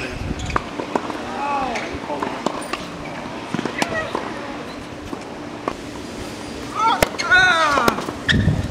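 Tennis balls struck by rackets during a rally, sharp single hits a second or more apart, with people's voices in the background and louder calls near the end.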